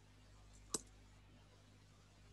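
A single sharp mouse click about three-quarters of a second in, against faint steady room hum.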